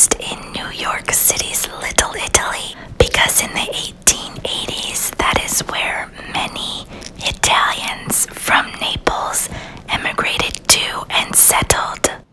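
A person whispering continuously, close to the microphone.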